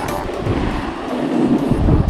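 Wind rumbling on an action camera's microphone, mixed with the hiss of snowboards sliding over packed snow.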